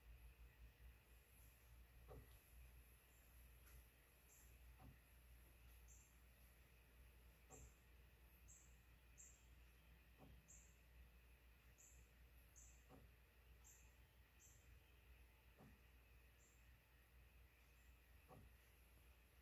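Near silence: a Dymo DiscPainter disc printer at work, heard only as a faint tick about every two and a half seconds over a low hum, with many faint, short high chirps.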